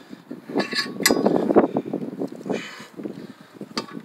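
Metal clinks and knocks from a bench vise and a length of copper tube being handled and reset in the vise jaws: a quick cluster of them with one sharp ringing clink in the first second and a half, then quieter handling and a single click near the end.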